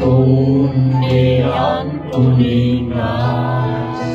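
A group of people singing a worship song together over musical accompaniment, in long held notes that change about once a second.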